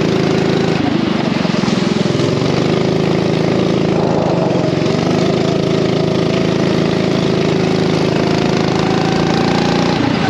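Racing kart engine running hard, its pitch dipping briefly about a second in and again around four seconds in, then climbing gradually toward the end.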